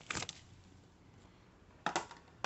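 Two brief handling sounds, one just after the start and one near the end, as a small power-cable plug is handled and fitted into a socket on a fabric infrared light-therapy boot, with faint room noise between.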